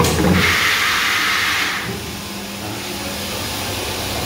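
The rinse nozzle of an automatic 20-litre bottle filling machine sprays water up inside an inverted bottle for about a second and a half, then cuts off. A steady low pump hum runs underneath.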